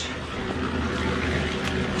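A steady low motor drone with a faint hum above it, and a light click near the end.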